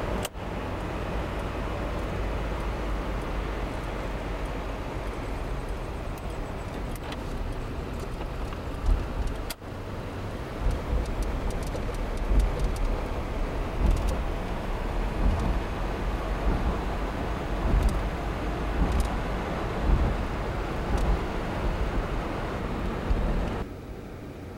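Road and engine rumble of a car being driven, heard from inside the cabin, with a few bumps in the second half. The sound breaks off for an instant twice, near the start and about ten seconds in.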